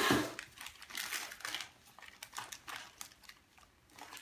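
Gift-wrapping paper crinkling as a small child's hands pull at a wrapped box, in irregular bursts that are loudest at the start and about a second in and die down toward the end.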